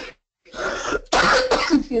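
A person coughing twice in quick succession, heard over a conference-call line.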